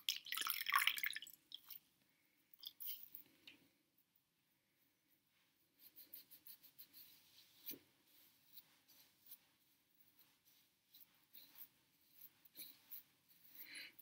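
Faint, intermittent soft wiping and rustling of gauze pads rubbed over skin wet with cleansing gel, with a few small clicks.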